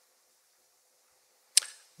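Near silence for a second and a half, then one short, sharp intake of breath at the lectern microphone just before the speaker resumes talking.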